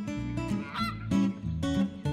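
A cartoon sound effect of a waterfowl honking, once, about a second in, over light plucked acoustic-guitar background music.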